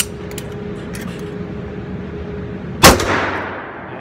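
A single 9mm pistol shot from a Springfield Armory Range Officer 1911, fired about three seconds in and echoing off the indoor range. The spent case on this shot fails to eject properly and drops out through the magazine well.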